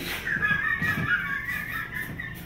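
High-pitched, wheezing laughter: a thin, wavering squeal held for over a second over short breathy gasps.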